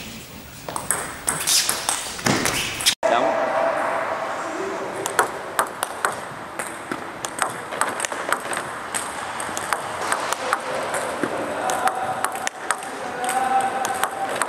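Table tennis balls struck by bats and bouncing on the table in quick multi-ball practice: a run of short, sharp clicks, several a second, at an uneven pace. Hall murmur comes first, and the sound cuts out for a moment about three seconds in.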